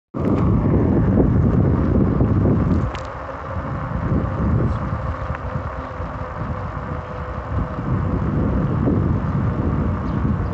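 Low wind rumble on the microphone mixed with road and rolling noise from a moving ride, heaviest for the first three seconds, then slightly softer.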